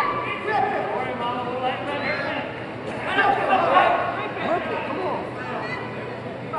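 Indistinct voices talking and calling out, with no clear words, over the low background noise of a large hall.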